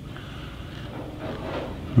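Quiet room tone: a low steady hum and faint hiss, with no distinct sound event.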